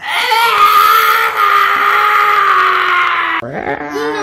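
An adult man's mock child's cry: one long, loud wail that sinks slowly in pitch and breaks off abruptly about three and a half seconds in. It is staged crying, a grown man imitating a young child who wants his mother.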